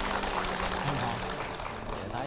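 Studio audience applauding over background music, the clapping thinning out toward the end.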